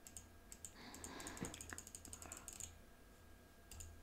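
Faint computer keyboard keystrokes: a quick run of light clicks from about half a second in to nearly three seconds in, over a low steady hum.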